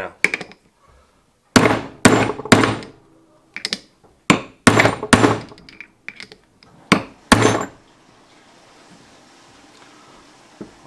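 Brass-headed hammer striking a steel socket to drive a 3D-printed plastic gear onto a keyed shaft: about ten sharp blows at irregular intervals, some in quick pairs, before the hammering stops.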